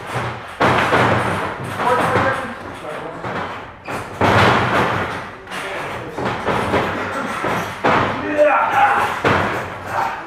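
Three heavy thuds on a wrestling ring's mat, spaced about three and a half seconds apart, each ringing briefly in the room, as wrestlers lock up and move on the canvas. Voices call out between them.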